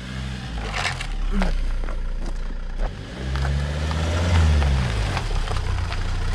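Volvo car's engine pulling at low speed, its note rising and falling twice, the second time louder and longer. Scattered light clicks come from tyres on a loose gravel and dirt track.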